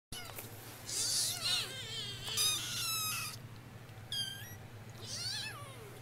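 Kitten meowing, four high-pitched, wavering meows a second or so apart.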